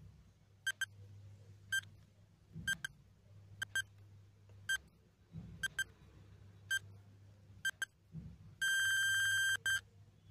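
Quiz countdown timer beeping, one short high electronic beep (sometimes a quick double) about once a second. Near the end comes one long steady beep of about a second as the countdown runs out.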